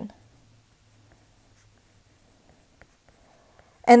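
Very faint taps and strokes of an Apple Pencil writing on an iPad screen over a low hum, near silence otherwise, with two small ticks near the end.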